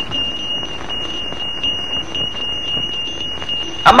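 Old film soundtrack hiss with a steady high-pitched whine. Just before the end, a loud falling cry of "Amma".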